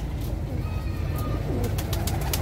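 Pigeons cooing, with a few light clicks near the end.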